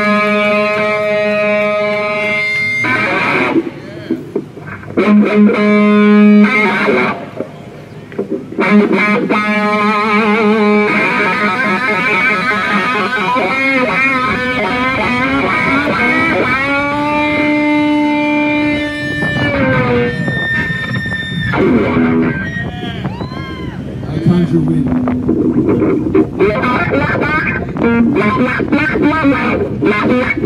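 Live rock band playing, led by an overdriven electric guitar solo: long sustained notes with bends and wide vibrato, and one note sliding down about two-thirds of the way through, over drums and bass.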